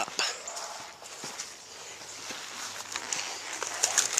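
Footsteps walking, with irregular light knocks and rustling from a handheld camera brushing against a jacket.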